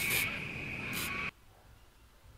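Aerosol spray-paint can spraying: a steady hiss with a high whistle, with brighter spurts at the start and about a second in. It stops abruptly a little over a second in.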